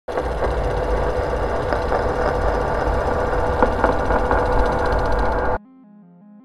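Loud, continuous rough rattling noise with a deep rumble and scattered clicks, machine-like, that cuts off suddenly near the end; a few faint, soft music notes follow.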